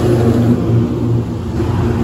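A road vehicle's engine running close by: a steady low hum, with a louder rush of noise in the first half second.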